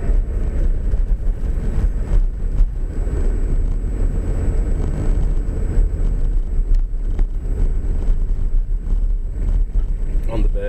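A car's engine and tyre noise heard from inside the cabin while driving slowly: a steady low rumble, with a faint constant high-pitched whine above it.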